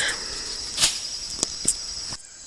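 Steady high-pitched drone of insects in the grass, with three quick swishes of a stick whipped through tall weeds, the first and loudest a little under a second in, two more close together past the middle.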